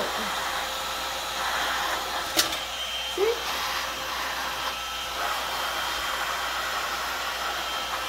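Electric heat gun blowing hot air, a steady rushing hiss with a faint constant high whine. A single sharp click about two and a half seconds in.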